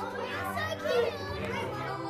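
Young children's voices chattering in a classroom, over steady background music from a Kahoot quiz game.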